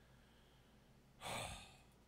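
Near silence, then a little over a second in a single short, breathy sigh lasting about half a second.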